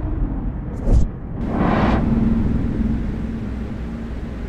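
Edited-in transition sound design: a low rumbling drone with a thump about a second in and a whoosh just after, settling into a steady low hum.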